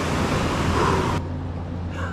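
Surf breaking and washing up on a sandy beach, cut off abruptly about a second in and replaced by a duller, steady low rumble.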